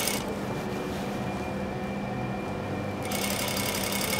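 Industrial sewing machine running steadily, stitching horsehair braid onto a silk charmeuse hem.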